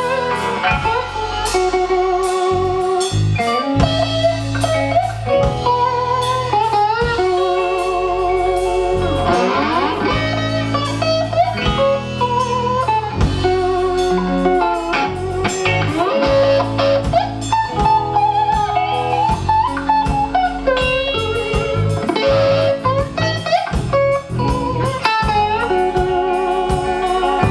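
Rock band playing live: an electric guitar lead with long held notes and vibrato over bass and drums, with a sliding run of notes about ten seconds in.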